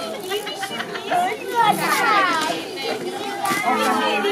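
Children's excited voices overlapping as they chatter and exclaim, with a high, falling exclamation about halfway through.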